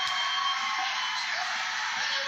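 Steady background hiss with faint background music under it.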